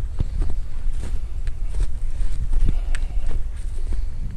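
Wind buffeting the microphone as a low, uneven rumble, with footsteps through fresh snow and brush.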